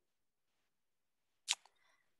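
Near silence, broken about one and a half seconds in by a single short, sharp click.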